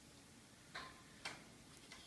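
Near silence: room tone, with two faint clicks about three-quarters of a second in and half a second later.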